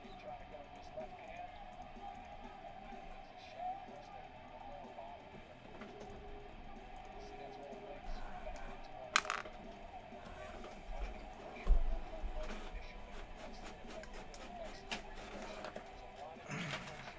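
Low background music with faint voices under it. A sharp click about nine seconds in and a low knock just before twelve seconds.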